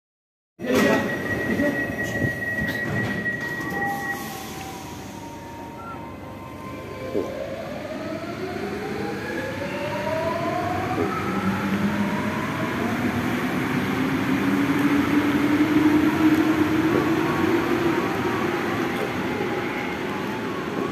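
MP14 automatic metro train departing: a steady high warning tone for about three seconds near the start, then the electric traction motors' whine rising in pitch as the train accelerates and pulls out, growing louder.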